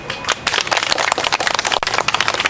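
Camera handling noise: a hand rubbing over the camera body and its microphone, giving a dense run of irregular crackles and scrapes from about half a second in.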